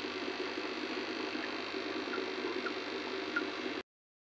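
Steady hissing background noise with four faint short chirps, cutting off suddenly near the end.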